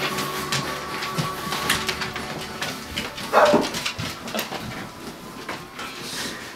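A pet dog whining briefly about three seconds in, with soft clicks and rustling around it.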